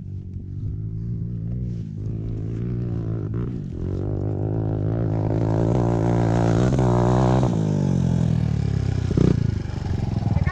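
Dirt bike engines running at idle, a steady low hum that grows louder through the middle and eases off again, with a short knock near the end.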